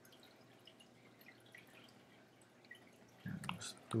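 Faint, scattered keyboard clicks from typing code. Near the end comes a brief louder sound from the voice as speech starts again.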